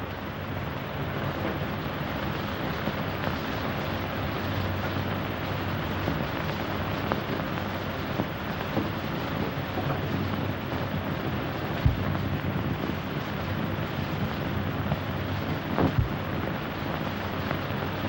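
Steady hiss with a low hum, the surface noise of an old film soundtrack, broken by two brief pops in the second half.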